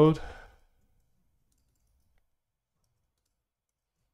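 The end of a spoken word in the first half second, then near silence, with one faint tick about two seconds in.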